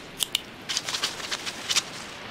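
Cartoon sound effect of a pencil scratching on paper: a quick, irregular run of short, sharp ticks and scratches.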